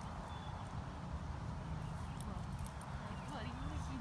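Faint, indistinct speech over a steady low rumble, with a few small clicks.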